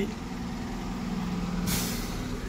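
Heavy trucks' diesel engines running with a steady low rumble, and a short sharp hiss of released air near the end, typical of a truck's air brakes.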